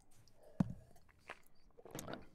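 A few faint clicks and small knocks close to a microphone, the sharpest about half a second in.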